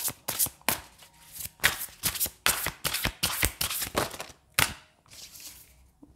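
A deck of tarot cards being shuffled by hand: a quick, irregular run of card flicks and slaps that thins out and stops about a second before the end.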